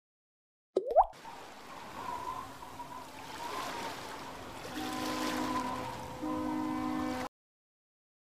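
Intro music for an animated title sequence, mixed with water sound effects: a quick rising bubbly plop about a second in, then a watery hiss under held tones that thicken into layered notes over the last few seconds. It cuts off abruptly a little before the end.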